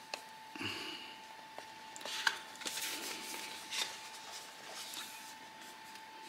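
A cardboard retail box being opened by hand: soft rustling and scraping of card and paper, with a few light clicks.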